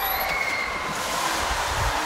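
A 3.3-tonne orca breaching and falling back into the pool: a heavy splash and a rush of water spray thrown over the poolside, building in the second half with a low thud near the end.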